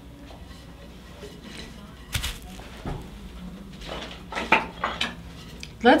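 Wooden felting roller bars being handled and set down on the table: a few sharp wooden knocks and clacks, one about two seconds in and a small cluster near the end.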